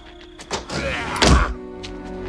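A man's drawn-out cry, then a heavy thunk as a wooden window shuts about a second and a half in, over film score music.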